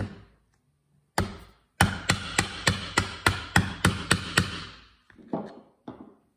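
A mallet striking a metal rivet-setting tool, setting a copper rivet through thick veg-tanned leather. One blow at the start and another just over a second in, then a run of about ten quick blows, roughly three a second, each with a short ring, and a few softer knocks near the end.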